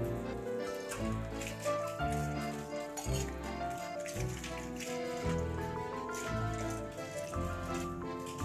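Background music: a melody over a bass line that changes note about once a second.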